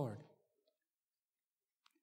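A man's speaking voice trailing off at the end of a word, then near silence with one faint click just before he speaks again.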